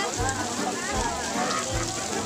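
Water from a tiered fountain splashing steadily into its basin, with crowd voices and music carrying a regular bass beat behind it.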